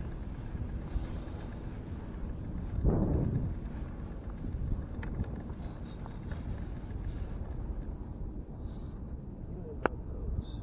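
Wind rumbling on the microphone of a handlebar-mounted camera as a bicycle rolls across beach sand. There is a stronger gust about three seconds in and a sharp click near the end.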